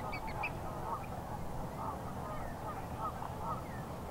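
Waterfowl on the lake calling: a run of short honking calls repeating every half second or so over steady low background noise.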